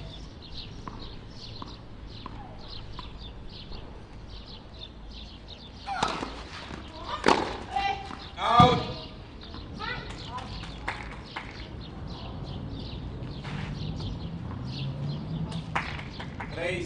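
Tennis rally: a few sharp racket strikes on the ball about six to nine seconds in, the loudest near the middle, one of them joined by a short voiced sound, over birds chirping.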